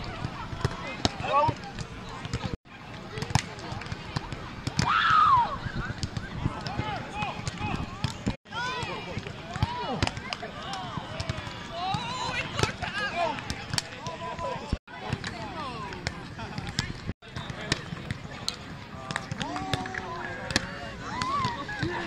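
Voices of people at a beach volleyball game, with a louder call about five seconds in and scattered sharp slaps of hands and forearms hitting the ball. The sound cuts out briefly several times.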